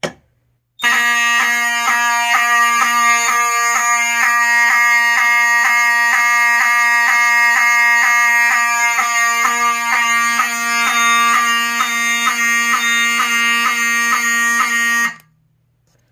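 Ellenco 45S-HSD-24 fire alarm horn/strobe (a rebranded Wheelock 7002T) sounding continuously in alarm: a loud, steady horn tone that starts about a second in and cuts off suddenly near the end, when the signals are silenced at the panel.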